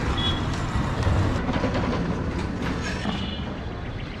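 A motor vehicle running on the street close by, a dense rumble that is loudest about a second in, with two brief high-pitched beeps, one near the start and one about three seconds in.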